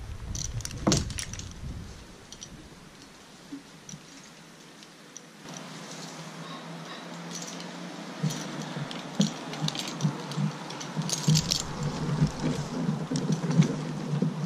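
Metal tree-climbing hardware, carabiners and a rope-climbing device, clinking and jingling in short irregular bursts as the climber swings and lowers himself on the rope. There are a few clinks at first, a quieter stretch, and then busier rattling through the second half.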